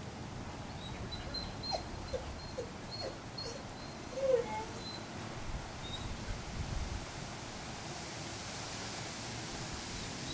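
A dog giving a few short whimpers and yips, clustered in the first half, the loudest a little before the middle.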